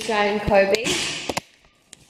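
Four or five short, high, sliding voice sounds in quick succession as dogs are greeted, followed by a few sharp clicks and a moment of near silence near the end.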